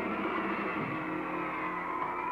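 A 1960s rock band holding a chord on electric guitars, ringing steadily with no drum beats, the sustained ending of a number.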